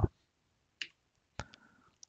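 Two short, sharp computer-mouse clicks, a little over half a second apart.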